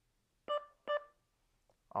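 Guardline wireless driveway alarm receiver sounding two short electronic chime tones of the same pitch, about half a second apart, as the sensor is triggered in learn mode: the sign that the sensor has paired with the newly selected melody.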